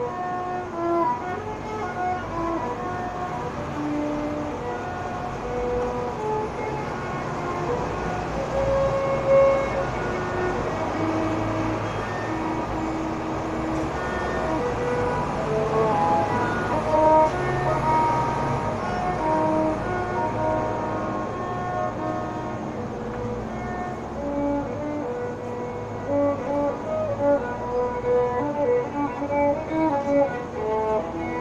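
Violin playing a melody of held and moving notes, with a steady low rumble underneath.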